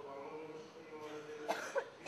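A person coughing, two sharp coughs about a second and a half in, over talk in the room.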